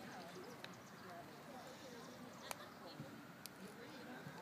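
Quiet background with a few sharp, light clicks of plastic as a pencil is pushed into a water-filled plastic zip-top bag.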